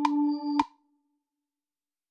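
GarageBand's Hammond organ emulation (Soul Organ sound) sounding a single held note, with a sharp click at each fresh attack, which cuts off abruptly just over half a second in; silence follows.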